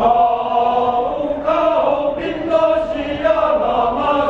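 Mixed choir of men's and women's voices singing a traditional Sun Moon Lake folk song in harmony. Sustained chords start strongly at the opening, with the voices moving to new notes about a second and a half in and again a little later.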